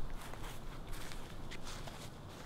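Footsteps of a person walking away over grass, growing fainter.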